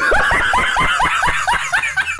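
A man laughing hard: a rapid run of loud 'ha' bursts, about five a second, each falling in pitch.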